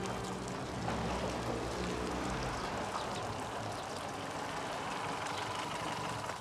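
A vintage car's engine running as the car drives up and comes to a stop, over a steady outdoor background noise.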